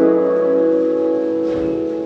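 A piano chord held and slowly fading in a jazz-hop beat, with the drums dropped out.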